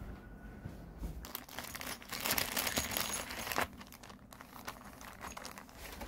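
Plastic wrapping crinkling as it is handled, in a dense crackling spell that builds from about a second in and stops abruptly about three and a half seconds in, then lighter rustling.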